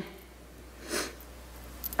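A woman's single short sniff about a second in, over faint steady room hum, with small mouth clicks just before she speaks again.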